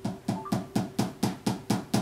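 Hammer tapping a wooden peg into a boot sole on its last: a quick, even run of light taps, about four a second, seating the peg.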